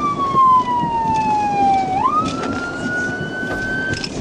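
Police car siren on a slow wail: one long falling tone, then a quick rise about two seconds in that climbs on slowly before it cuts off at the end. Road and engine noise run underneath.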